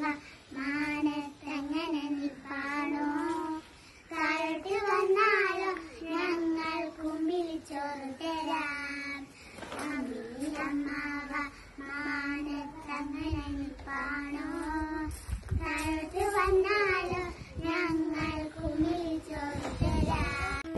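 Young girls singing a song together, unaccompanied, in short phrases with brief breaks between them.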